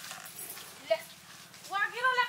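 A quiet stretch with one short high sound about a second in. Near the end, a loud, high-pitched voice starts calling out.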